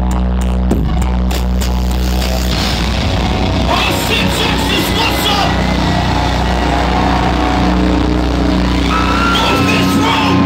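Loud live metal-show sound over a PA: an electronic intro with a deep sustained bass drone, ticking for the first second or so. From about two and a half seconds in, a crowd cheers and shouts over it, and the bass drops away near the end.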